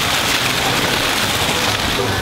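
Garden fountain's water jet splashing steadily into a pond, a dense, even hiss of falling water.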